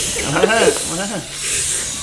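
Hand-operated floor air pump inflating an inflatable toy, its air hissing in strokes that swell about once a second.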